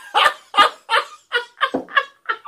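Men laughing hard: loud, rhythmic bursts of laughter, about three a second.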